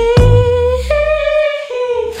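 Pop song in a short break: a single held vocal note that steps up in pitch about a second in, over a low bass note that slides downward, with the drums dropped out until just after.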